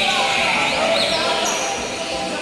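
Caged seedeaters (papa-capim and coleiros) singing together, many quick high chirps and whistles overlapping, over a murmur of people's voices.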